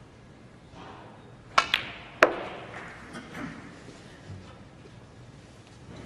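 Snooker balls: the cue tip strikes the cue ball with a click about a second and a half in, then the cue ball hits the blue with a sharper, louder click. The blue is potted, and softer knocks follow a second or so later.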